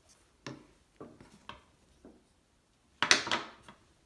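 Light knocks of potter's tools and objects being handled on a work table, about every half second, then a louder clatter about three seconds in.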